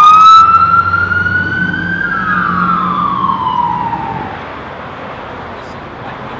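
Police car siren: a single long wail that climbs slowly, then falls in pitch and dies away about four seconds in, over a low engine rumble.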